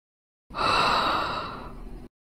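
A long, breathy exhale from a person, starting abruptly, loudest at first and tapering off over about a second and a half before cutting off suddenly.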